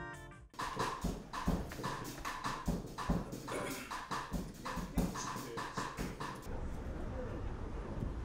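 Music fades out in the first half-second, then a run of sharp clacks comes at an even walking pace, about two or three a second. They stop about six and a half seconds in, leaving a low steady hum.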